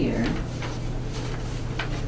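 Large paper maps and plans rustling and crackling in short bursts as they are handled on a table, over a steady low room hum.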